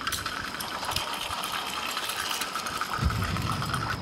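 Steam locomotive running sound, a steady mechanical noise as the engine pulls away, with a deeper rumble coming in about three seconds in.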